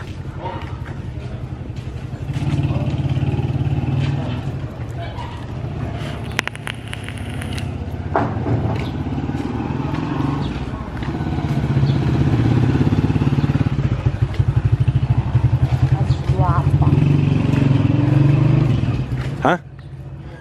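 A motorcycle engine running close by, with a rapid low pulsing, louder in the second half.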